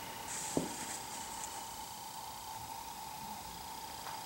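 Quiet room tone with a faint steady hum. A faint rustle of a knitted shawl being handled comes early, with a single soft click about half a second in.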